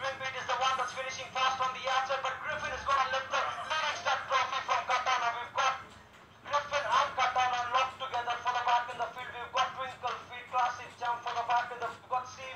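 A horse-race commentator's voice calling the finish in a fast, continuous stream from a television speaker, thin with no bass. It breaks off briefly about six seconds in.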